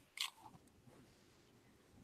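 Near silence in a small room, with one faint short click a fraction of a second in.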